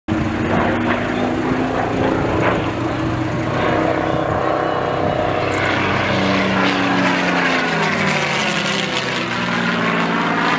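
Supermarine Spitfire's V12 piston engine and propeller running loud and steady in a low pass, the engine note falling in the second half as the plane goes by.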